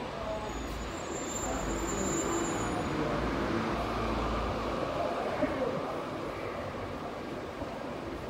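City street ambience: a steady background hum of traffic, with a deeper rumble in the first half and voices of passersby mixed in.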